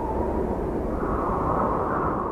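A steady rushing, rumbling whoosh sound effect like a passing aircraft, growing a little brighter about halfway through.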